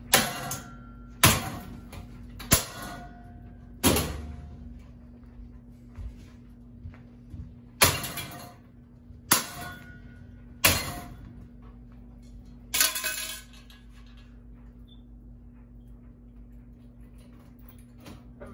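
A long pole striking a metal ceiling fan hard, again and again: eight clanging hits, each ringing briefly, one to two seconds apart with a longer pause in the middle.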